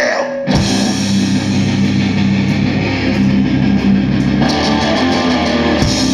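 Hardcore punk band playing live: a man's voice cuts off at the start, and about half a second in, distorted electric guitars, bass and drum kit come in together all at once, loud and dense.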